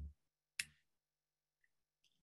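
Near silence, broken by a single short click about half a second in.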